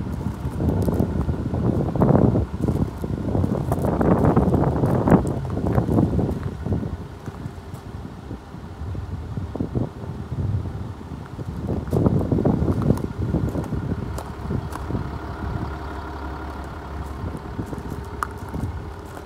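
Wind buffeting the microphone in irregular gusts, loudest in the first few seconds and again about twelve seconds in.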